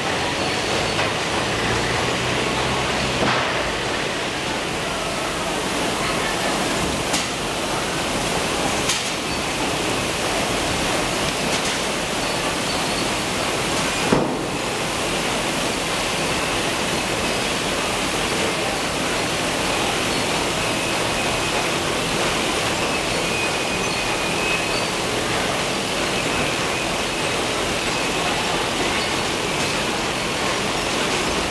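Steady rushing noise of a running vegetable packing line, with conveyors carrying bell peppers and spray bars washing them with water. A few sharp knocks break through, the loudest about 14 seconds in.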